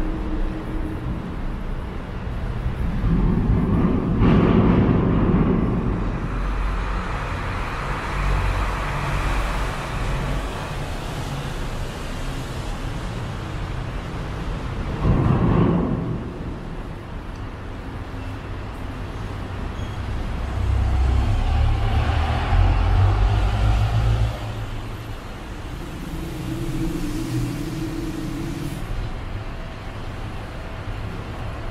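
Street traffic: cars passing one after another on the road beside the walkway. The loudest pass comes at about four seconds in, a short one near fifteen seconds, and a heavier engine rumble from about twenty-one to twenty-four seconds.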